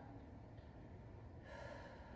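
Near silence: room tone with a low hum, and one faint breath about one and a half seconds in, taken while holding a deep stretch.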